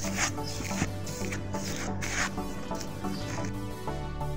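Plastic cling film crinkling and rubbing as it is stretched over a glass bowl, in several short bursts mostly in the first half, over steady background music.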